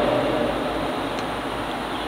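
Steady, even background hiss with no other clear sound.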